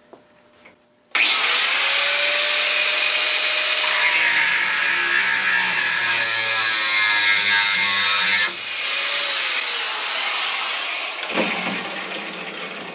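Corded 4½-inch electric angle grinder switched on about a second in. Its abrasive cutoff disc spins up and from about four seconds in cuts through a steel rebar clamped in a vise. The sound drops somewhat at about eight and a half seconds as the disc runs on, then dies away near the end.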